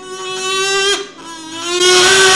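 A voice holding two long, high sung notes at nearly the same pitch. The first breaks off about a second in, and the second ends in a breathy rush.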